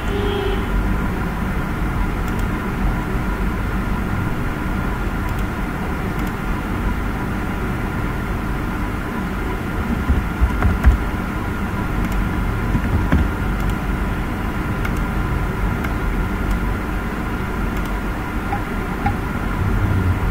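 Steady background rumble and hum with a few faint clicks near the middle.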